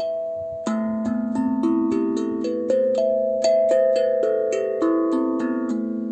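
Steel tongue drum with nine tongues around a central tongue, played with the fingertips one tongue at a time, about three notes a second, alternating hands. The notes step up in pitch and then back down, each ringing on and overlapping the next.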